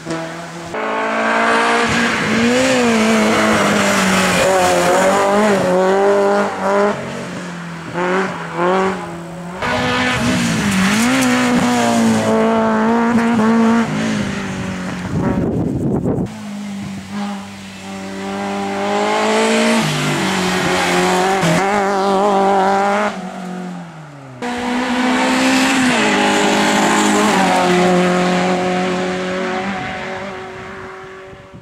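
Racing car engine, a Peugeot 106 hillclimb car, run hard at high revs. Its pitch climbs and drops repeatedly through gear changes and braking for corners. The sound breaks off suddenly twice, where separate passes are spliced together.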